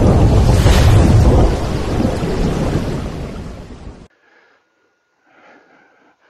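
Loud rumbling, thunder-like sound effect that fades over a few seconds and cuts off abruptly about four seconds in, followed by faint room tone.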